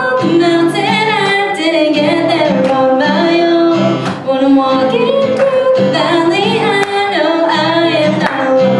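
A woman singing a worship song live, accompanied by a strummed acoustic guitar.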